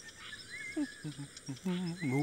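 Soft background ambience of chirping birds and insects. Near the end a voice begins singing.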